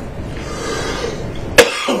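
A person clearing their throat, ending in one sharp, loud cough about one and a half seconds in.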